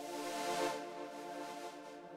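Xpand!2 virtual instrument sounding one held, sustained synth note or chord, steady in pitch with a bright hiss on top, a little loud.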